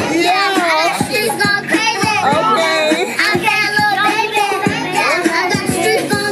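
Music playing: a high sung vocal over a drum beat.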